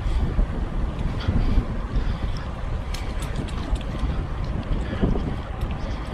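Wind buffeting the microphone of a camera carried on a moving bicycle, a steady uneven rumble, with a few light ticks about three seconds in.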